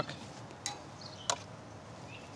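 Metal tongs clicking against the gas grill's grates twice as eggplant slices are laid down.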